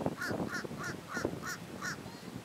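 Crow cawing, a quick series of about six short harsh caws, roughly three a second.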